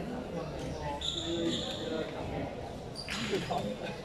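Indistinct chatter of many voices echoing in a large indoor sports hall, with a short high-pitched tone about a second in.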